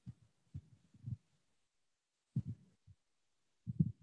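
A handful of short, soft, low thumps, irregularly spaced with dead silence between them, picked up by a video-call microphone.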